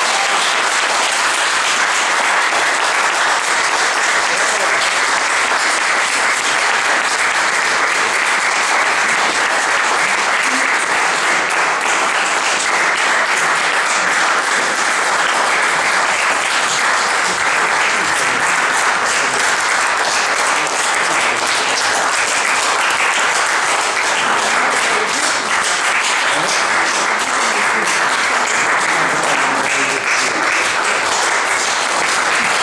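Audience applauding: dense, even clapping that holds at one level.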